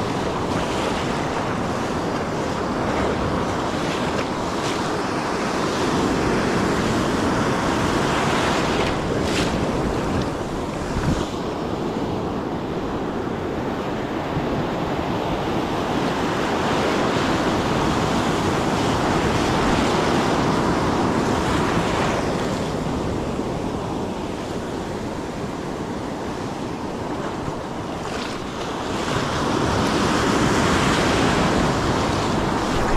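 Ocean surf breaking and washing up the sand, swelling and easing wave by wave, with wind buffeting the microphone.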